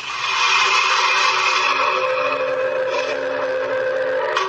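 A match struck on a matchbox, catching with a sudden scrape and then burning with a steady, loud hiss as it lights a beedi, with a faint low hum underneath.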